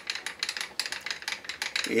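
Table of an Optimum BV20L milling machine being wound along by hand, a rapid, irregular run of small clicks and ticks from the feed.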